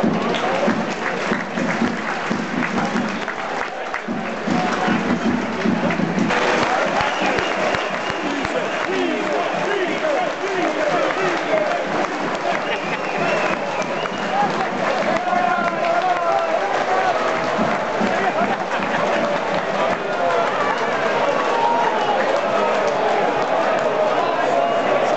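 Football crowd in the stand cheering and clapping, many voices shouting and chanting together in a loud, continuous din.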